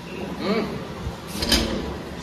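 Background voices, with a short scrape or knock about one and a half seconds in.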